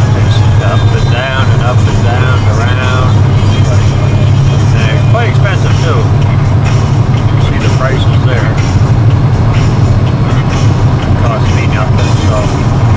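Steady low drone of a vehicle's engine and tyres at highway speed, heard inside the cab, with a voice rising and falling over it.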